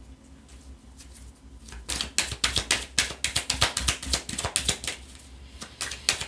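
A deck of oracle cards shuffled by hand: a quick run of sharp card flicks and taps, starting about two seconds in and lasting about three seconds, with a few more near the end.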